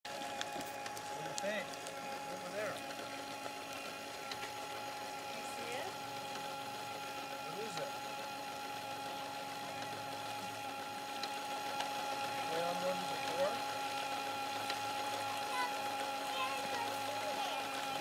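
A steady hum made of several even tones, with faint voices of people talking at a distance now and then.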